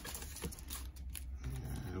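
Faint rustling and clicks of a paper envelope and plastic card sleeves being handled, over a low steady hum. A drawn-out voiced "and" comes in near the end.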